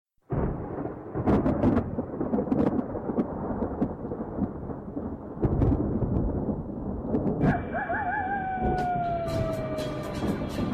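Thunder rumbling with sharp crackles, as an intro sound effect. About three quarters of the way in, a clear wavering tone joins it and slowly slides down in pitch.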